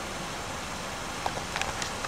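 Steady outdoor background noise, an even hiss, with a few faint clicks in the last second.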